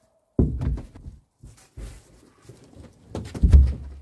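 A rowboat hull being tipped over and set down on the ground: a series of knocks and thumps, starting about half a second in, with the heaviest thump about three and a half seconds in.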